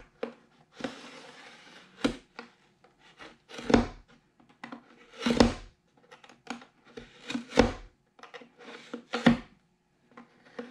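X-Acto hobby knife drawn repeatedly along marked lines to slice fin slots into a rocket body tube. About a dozen short scraping cuts come at uneven intervals of roughly a second. The strongest strokes carry a low bump from the tube being handled on the bench.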